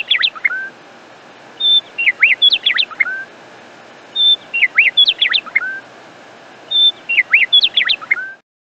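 Birdsong: the same short phrase, a brief steady high note followed by a quick run of swooping notes, repeats about every two and a half seconds.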